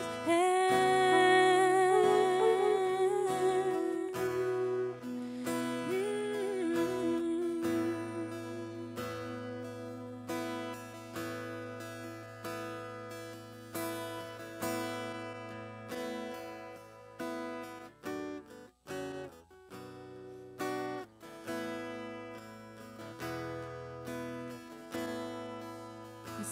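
Live worship-band music led by a strummed acoustic guitar. The first few seconds hold a long, wavering note, and the rest is a quieter instrumental passage that slowly fades.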